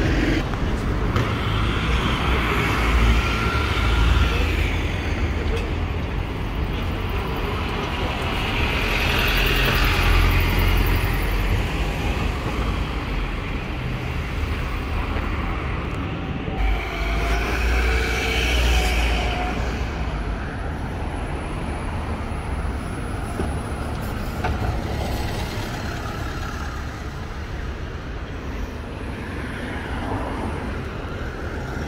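City road traffic with buses passing: heavy engines rumbling and tyres on the road, swelling and fading several times as vehicles go by.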